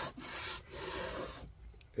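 Small wooden calliope bellows block rubbed back and forth on a sheet of 120-grit sandpaper laid flat on the bench, a dry scratching in a few strokes that stops about a second and a half in. This is the final smoothing to flatten the block's glue face.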